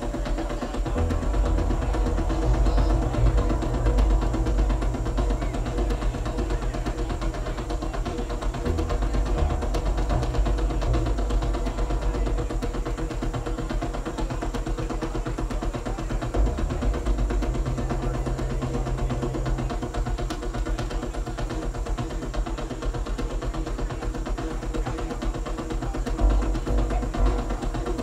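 Live electronic music played on synthesizers: deep bass notes that shift now and then under held mid-range tones, with no clear beat.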